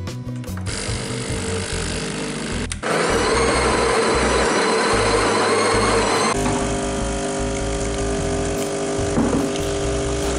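Espresso machine running: a loud whirring starts about three seconds in and gives way a few seconds later to a steadier hum from its pump as espresso pours into a mug.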